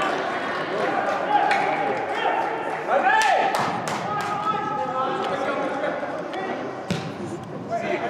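Players and spectators shouting and calling in a large, echoing indoor soccer hall, with a few sharp thumps of the ball being kicked, the clearest about seven seconds in.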